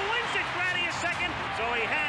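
Excited, high-pitched shouting voices with no clear words, one yell after another.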